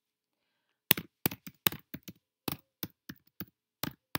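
Computer keyboard keys being typed: about a dozen sharp, unevenly spaced keystrokes starting about a second in, as a password is entered.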